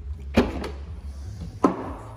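Two sharp clunks about a second apart, the second with a short ring, as the BMW 140i's hatchback tailgate is unlatched and swung open.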